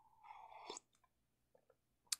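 Faint sip of a drink from a mug, a brief slurp and swallow in the first second.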